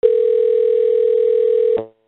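Telephone dial tone on a VoIP phone line: one loud, steady tone that cuts off abruptly shortly before the next call is answered.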